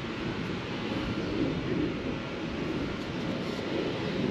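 Steady outdoor background noise, an even rumble and hiss with no distinct events.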